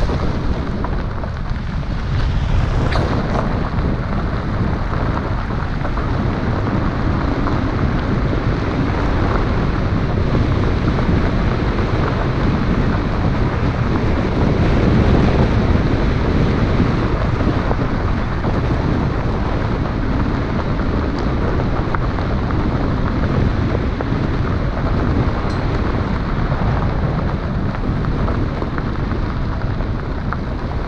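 Wind buffeting the microphone of a camera mounted on the outside of a moving car, over the rumble of tyres rolling on a gravel road. The noise is steady, with a couple of faint ticks about three seconds in.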